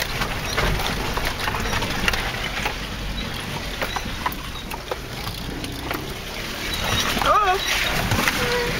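Inside a 4x4's cab on a rough, rutted track: a steady low rumble with frequent irregular knocks and rattles as the vehicle bounces over the bumps. A brief wavering voice-like sound comes about seven seconds in.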